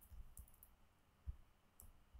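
A few faint, scattered computer keyboard key clicks, with a low thump about a second and a quarter in that is the loudest sound.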